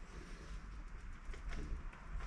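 Plastic vacuum bagging film crinkling as hands press and pleat it down over a layup, over a low steady hum.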